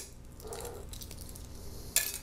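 Quiet handling of a freshly peeled hard-boiled egg: soft rubbing of fingers on the egg, with one short sharp click near the end.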